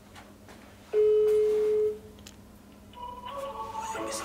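A single steady electronic beep, about a second long, starts about a second in and is the loudest sound here. Near the end a quieter, higher-pitched tone with several pitches comes in.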